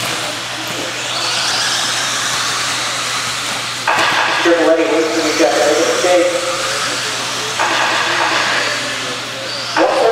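Electric RC off-road buggies with 17.5-turn brushless motors racing on an indoor dirt track, a high motor whine rising and falling as they accelerate and brake. A voice comes in over it about four seconds in, for a few seconds.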